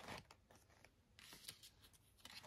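Faint rustling and light ticks of a paper sticker and a plastic sticker sheet being handled and peeled, a small flurry near the start and another about one and a half seconds in.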